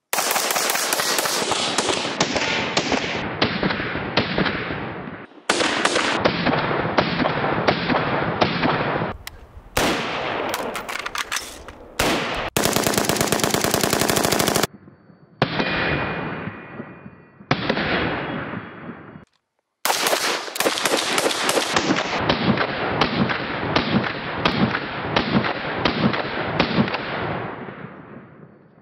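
AR-15 rifle in .223/5.56 fired in rapid strings of shots, several separate strings broken by short pauses.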